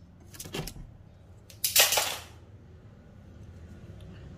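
Steel tape measure being released and retracting into its case: a few light clicks, then about two seconds in a short metallic rattling zip lasting under a second.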